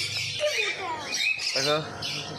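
Several caged conures giving quick, overlapping shrill squawks.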